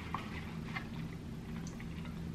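Faint chewing of a chicken sandwich, with a few small clicks, over a steady low hum in a small room.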